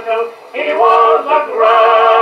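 A 1927 Edison Diamond Disc recording of a male vocal quartet, playing on an Edison phonograph. Voices in harmony hold wavering notes, with a brief lull about half a second in.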